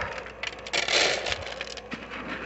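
Dry cat food rattling and scraping in a plastic bowl as it is handled, with a brief louder rush about a second in.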